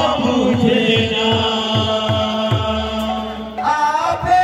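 Kirtan group chanting a sustained devotional line in unison over a hand-played two-headed barrel drum, whose deep bass strokes bend down in pitch after each hit, about four or five a second. The voices hold long level notes.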